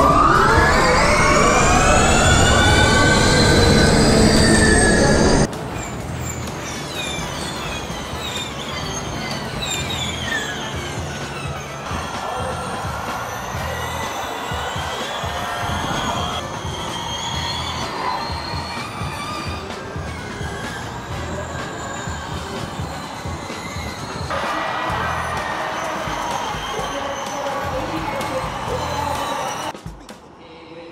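Formula E race cars' electric motors whining as the field accelerates from a standing start: many high whines rising in pitch together, loudest for the first five seconds. After that, cars pass one after another, their whines rising and falling as they go by.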